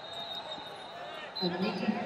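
Indistinct voices in a sports hall, then a man's voice calling out loudly about a second and a half in.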